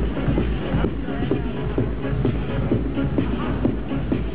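Techno played loud over a parade truck's mobile sound system, with a steady bass beat.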